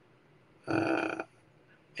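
A single short, voiced sound from a person's throat, held at one pitch for about half a second, a little under a second in.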